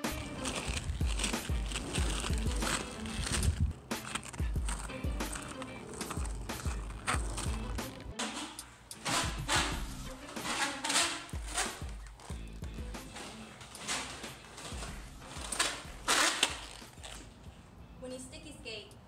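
Electronic background music with a drum-machine beat. From about halfway, quad roller-skate wheels roll and scrape on a concrete floor in repeated surges as the skater pushes along while keeping all eight wheels on the ground.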